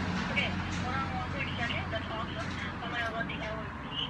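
A faint voice talking through a phone's speaker, with a steady low hum of road traffic underneath.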